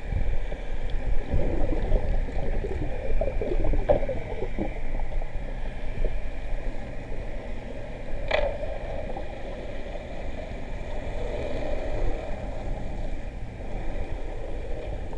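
Water swishing and gurgling against an underwater camera, with a low rumble and a faint steady hum beneath it; a single sharp click sounds a little past the middle.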